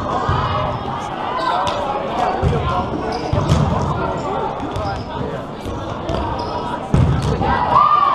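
Indoor volleyball play: repeated sharp knocks of the ball being hit and bouncing on the court, over players' and spectators' voices echoing in a large hall, with a louder call near the end.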